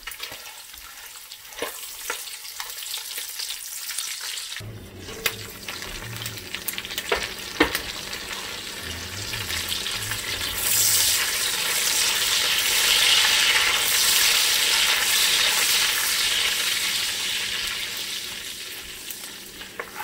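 Chopped bacon sizzling as it fries in its own rendered fat in an enameled cast-iron Dutch oven, stirred with a silicone spatula, with a couple of sharp clicks of the utensil against the pot. The sizzle swells louder from about ten seconds in, then eases off near the end.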